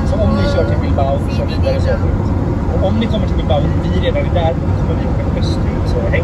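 Steady low road and engine rumble inside a motorhome's cab at motorway speed, with voices talking over it.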